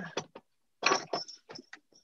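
A quick run of clicks and crackling rustles: a leather cowboy boot being handled and turned in front of the microphone.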